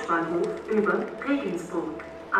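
A railway station loudspeaker announcement: a voice over the platform PA calling the arriving train.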